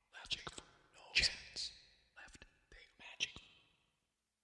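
Computer-processed baritone voice in whispered fragments: short breathy bursts with sharp consonant clicks and hissing s-sounds, about one a second, with brief gaps between them.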